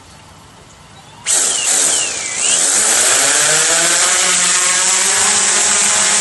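Quadcopter's motors and propellers spinning up for takeoff: a sudden start about a second in, the pitch rising for a couple of seconds, then a loud, steady whine as the drone lifts off.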